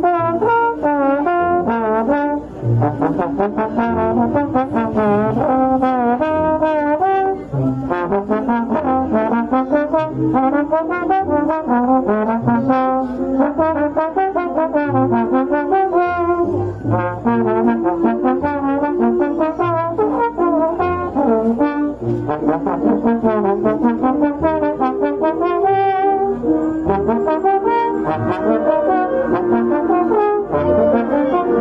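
Solo slide trombone playing a moving, continuous melodic line with quick runs, over a brass band accompaniment of held chords and a regular low bass pulse.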